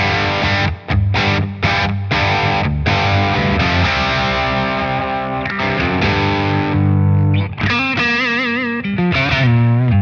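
Fender Custom Shop Double Esquire Telecaster played straight into a Victory VX100 amp on a light crunch, with plate reverb. The playing opens with chords cut by short stops, moves to held notes, and a note is bent with wide vibrato near the end.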